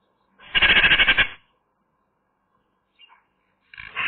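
Eurasian magpie calling close to the microphone: a rapid chattering call of under a second, starting about half a second in, then a shorter, quieter burst near the end.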